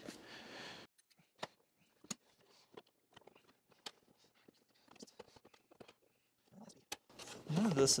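Sparse faint clicks and light knocks of hard plastic vacuum housing parts being handled and pressed together as the top cover and handle are seated on the body, with a sharper click shortly before the end.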